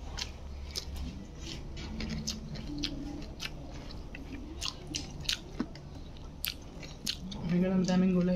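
A person chewing a mouthful of rice and vegetables close to the microphone, with many short mouth clicks and smacks. Soft hums come through while chewing, and a longer hummed "mm" starts near the end.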